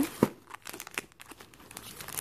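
Hands rummaging in a fabric bag pocket and handling a boxed pack of Polaroid instant film: rustling and crinkling with many small clicks, and a sharp tap about a quarter second in.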